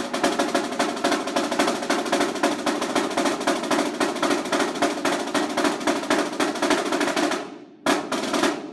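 Snare drum played with sticks in a continuous run of rapid strokes that dies away near the end, followed by one sharp stroke.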